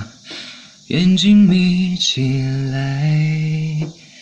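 A young man's solo voice singing a Mandarin pop melody without accompaniment into a microphone. He breathes in, then about a second in starts a phrase of long held notes that ends just before the close.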